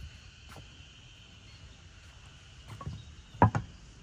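A steady high-pitched insect drone, with a few dull knocks. The loudest is a double knock about three and a half seconds in.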